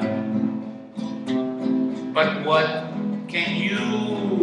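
Acoustic guitar strummed and picked as a song accompaniment, with a man's voice singing over it in places.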